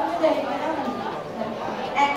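Speech: voices talking, with overlapping chatter.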